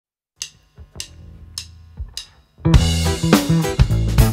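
Drummer counting in with four clicks of the drumsticks struck together, evenly spaced about 0.6 s apart. About two and a half seconds in, the band comes in loud on drum kit and bass.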